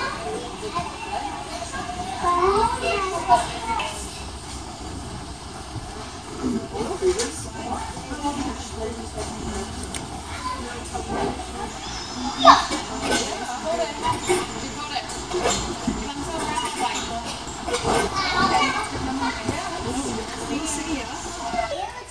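Children's voices and play noise in a large gymnastics gym, with scattered knocks and thumps. One sharp knock stands out about halfway through.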